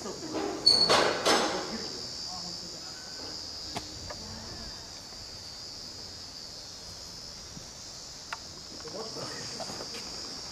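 Insects chirring steadily in a high, unbroken drone, with a brief loud rattling burst about a second in and a few faint clicks later.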